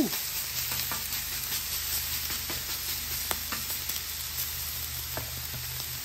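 T-bone steak searing in avocado oil on a hot flat-top griddle, sizzling steadily with scattered small pops.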